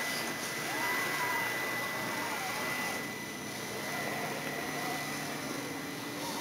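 Electric drive motors and gearing of 1/6-scale RC Jeep Wrangler crawlers whining as they climb. The pitch rises and falls in slow swells as the throttle is worked, over a steady high tone.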